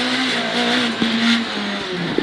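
Renault Clio Williams four-cylinder rally engine heard from inside the cabin, held at a steady high pitch and then dropping in pitch about a second and a half in, over tyre and road noise.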